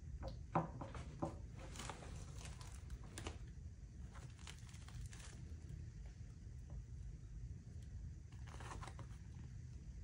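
Faint rustling and crinkling of woven Kevlar fabric layers as hands lift and fold them back, with a few light ticks in the first second or so.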